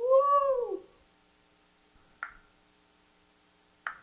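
Vocal tic of a young man with Tourette syndrome: a high, meow-like cry that arches up and down in pitch for under a second, then two short sharp pops later on. These are tics breaking through with the median nerve stimulation switched off.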